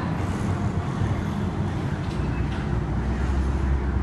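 Ferrari 488's twin-turbo V8 idling, a steady low rumble that grows stronger about halfway through.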